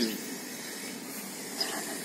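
A faint, steady hiss of outdoor background noise, with no distinct sound standing out.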